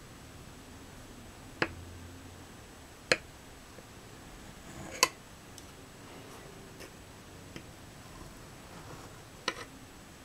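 Metal table knife and fork clinking against a ceramic plate while cutting into a soft frosted cake: four sharp clicks spread over several seconds, with a few fainter taps between.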